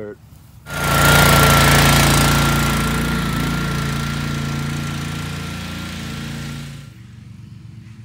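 Small gasoline engine of a walk-behind drum-type core aerator running under load as its rolling tines punch the lawn, with a steady high whine over the engine hum. It comes in suddenly, is loudest at first, fades steadily as the machine moves away, and cuts off abruptly about a second before the end.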